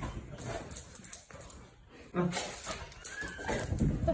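Golden retriever scuffling on a bed as it tugs at a man, with rustling of bedding and clothes, a few knocks and a low thump near the end.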